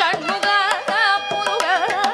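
Carnatic vocal music: a woman's voice sings with sliding, oscillating ornaments on the notes, over rapid hand-drum strokes on the mridangam and ghatam.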